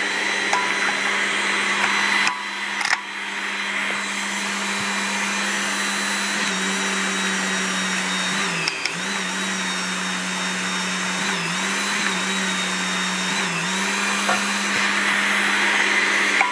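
Hydraulic torque pump motor running with a steady hum while it drives a torque wrench on a flange nut. The hum sags briefly in pitch three times in the second half as the pump loads up.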